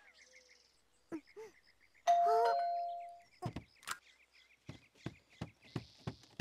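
A cartoon doorbell chimes once about two seconds in, over faint birdsong. It is followed by a run of light, quick footsteps.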